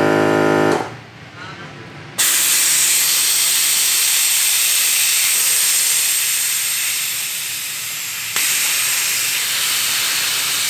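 A steady buzzing hum stops under a second in. After a brief lull, air starts hissing loudly and steadily at the valve of a Onewheel GT tire about two seconds in, easing slightly before stepping back up about eight seconds in.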